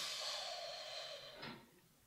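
A woman's long, hesitant hissing breath through clenched teeth. It fades out a little before the two seconds are up.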